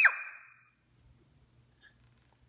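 The tail of a little girl's long, high-pitched shout of "no", its pitch dropping away over the first half-second; then near silence with a faint low hum.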